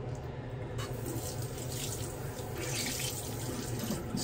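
Water running from a bathroom tap into a sink, an uneven hiss, over a steady low hum.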